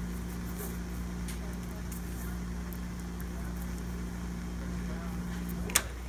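Steady low electrical hum, with faint handling noises as fingers roll and shape a small piece of pink dental wax, and one sharp click near the end.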